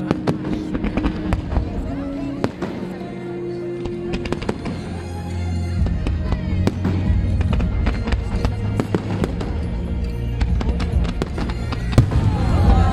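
Fireworks going off in quick succession, many sharp bangs and crackles, with heavier, louder booms from about halfway through.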